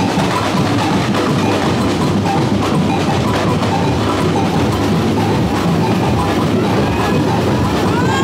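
Street carnival percussion band playing without a break: bass drums and a stick-struck double bell, mixed with crowd noise.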